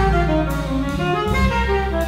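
Live jazz: a tenor saxophone plays a melodic line that slides downward at the start and then moves through several short notes. Beneath it an upright double bass holds low notes, and a drum kit plays with cymbals.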